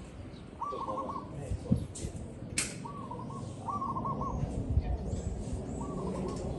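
Zebra dove singing: four short, rapidly stuttering coo phrases, with a single sharp click about two and a half seconds in.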